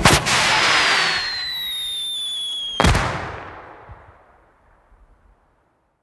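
Closing sound of the song: a sharp crash as the music stops, then a high whistle that slowly falls in pitch over a hiss. A second sharp bang comes about three seconds in and rings away into silence, like a firework effect.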